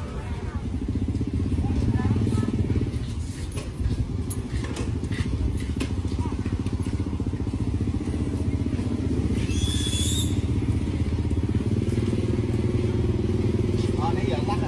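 A motor engine running steadily at an even pitch. There is a brief high-pitched sound about ten seconds in.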